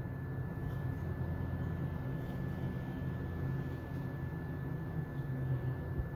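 Steady low machine hum with a faint constant high whine above it, unchanging throughout.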